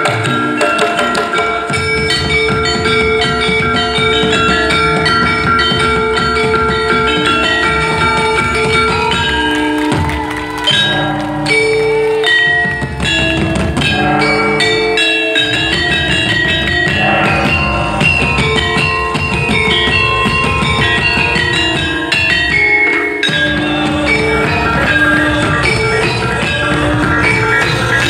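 Javanese gamelan music: metallophones play quick, stepping melodic lines over drum strokes, loud and continuous.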